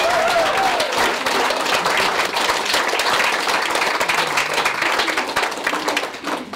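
A small indoor audience applauding, a dense patter of many hands clapping, with a voice calling out over it in the first second.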